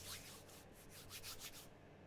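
Faint rubbing of hands together, a soft repeated swishing several times a second that dies away shortly before the end.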